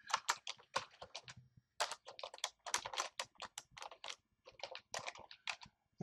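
Typing on a computer keyboard: a quick, irregular run of keystrokes with a couple of short pauses.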